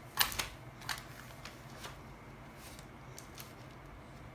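Paper being handled and a hole punch clicking: a run of light, sharp clicks and taps, the sharpest just after the start and the rest fainter and irregular.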